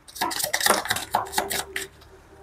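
A deck of tarot/oracle cards being hand-shuffled: a fast run of papery clicks and slaps as the cards are pushed through each other, stopping near the end as cards drop onto the table.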